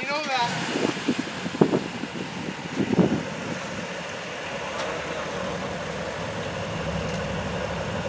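Mercedes-AMG SL roadster's engine running at idle, a steady low hum that sets in just after the start, with a few brief voices in the first seconds.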